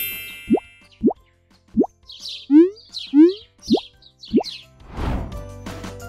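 Cartoon sound effects: a string of short, quick-rising plops, two louder springy boings in the middle with high chirps above them, then a whoosh about five seconds in as cheerful children's music starts.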